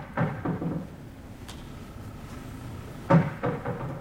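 A baseball smacking into a catcher's mitt about three seconds in: one sharp pop, the loudest sound here, followed by a few smaller knocks.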